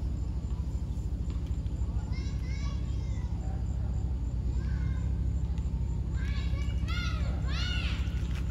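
Children shouting and calling in the distance, a few high calls about two seconds in and a run of them near the end, over a steady low rumble.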